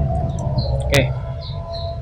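Steady low hum with faint steady tones of the voice recording's background noise, with a brief spoken 'eh, okay' about a second in.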